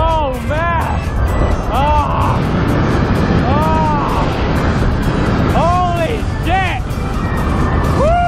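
Background music with a singing voice, over steady wind noise rushing on the microphone.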